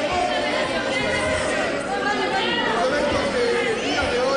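Several people talking at once, their overlapping voices echoing in a large hall.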